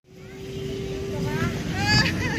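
Outdoor ambience fading back in after a sudden cut to silence: a low rumble with a steady hum tone, then people's voices near the end.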